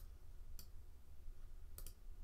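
Computer mouse button clicking, faint: one click at the start, another about half a second later, and a quick double click near the end.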